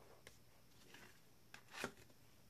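Faint scrape of a plastic card scraper dragged across a metal nail-stamping plate to clear off excess polish, a short rasp near the end, with a light tick shortly after the start.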